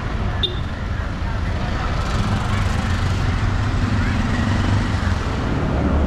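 Street traffic: a steady low rumble of vehicle engines and road noise that grows slightly louder about two seconds in.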